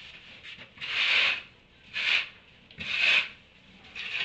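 Dry hay rustling and crunching in rasping bursts about once a second as donkeys and goats pull and chew hay at the feeder.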